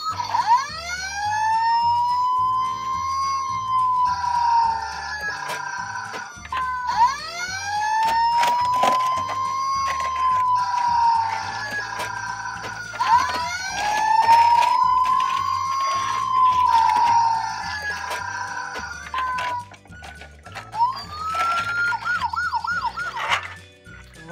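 Battery-powered toy playset siren set off by a push button: an electronic wail that rises and falls slowly three times, then switches to a quick warbling yelp near the end, over background music.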